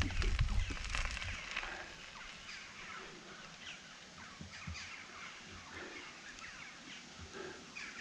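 Wild birds singing and calling in many short chirps, with a low rumble that fades out in the first second or two.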